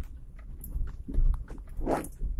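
Inside the cabin of a Perodua Kembara jolting along a rough dirt track: a continuous low rumble with irregular thumps, knocks and rattles as the body and suspension take the bumps, and a louder knock near the end.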